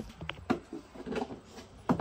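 Light handling clicks and taps from hands working at the windshield-washer reservoir filler, with two sharper clicks, one about half a second in and one near the end.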